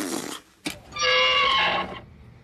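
A man making wordless battle-cry noises meant to frighten an enemy: a rough, breathy roar that fades about half a second in, then a held, pitched yell lasting about a second.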